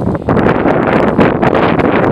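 Loud, gusty wind buffeting the camera microphone, a rough rumbling noise with irregular crackling spikes.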